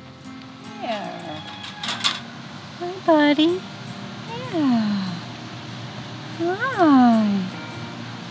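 A cat meowing four times, each call rising and falling in pitch, the last one the longest. A couple of sharp metallic clinks about two seconds in.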